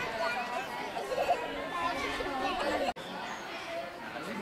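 Several young people chattering and talking over one another, with a momentary drop-out about three seconds in before the chatter resumes.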